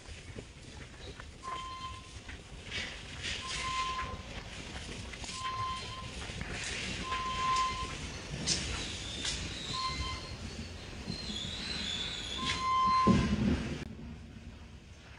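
Short single-pitch electronic beeps, six in all, roughly every two seconds, over the steady background noise of a large warehouse store. A louder low rumble comes near the end.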